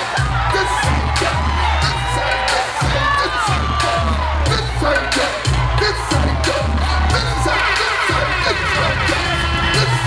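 Live concert music through the PA: a heavy bass beat repeating about once a second, with sharp percussion hits and crowd voices over it.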